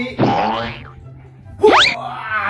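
Rubber squeaky dog toys being squeezed. There is a falling squeak just after the start and a quick, sharply rising squeak near the end, over background music.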